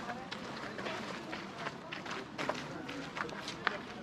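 Footsteps on a paved path, irregular short steps, with people talking in the background.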